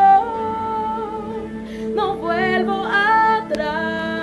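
A woman singing a Spanish-language worship song, holding one long note for a second and a half, then carrying on with the melody in shorter notes.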